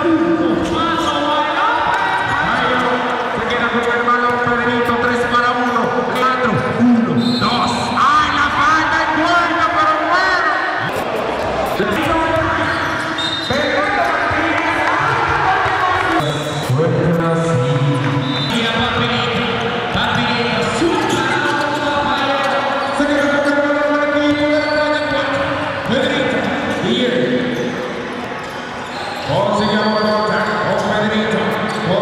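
A basketball bouncing on a wooden gym court during play, under a commentator's almost continuous talk.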